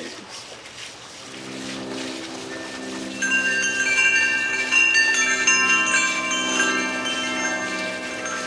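Metal-tube wind chime set ringing by hand, many clear tones sounding and overlapping from about three seconds in, over a low steady tone.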